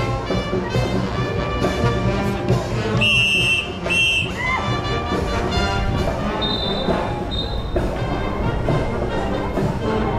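Live marching band music with a steady drum beat. There are two short, high, steady tones about three and four seconds in, and two higher ones around the seventh second.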